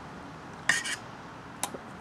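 Stiff copper wire strands and a metal hand tool clinking and scraping together as strands are worked loose from a thick cable: a short scrape-clink under a second in and a single sharp click near the end.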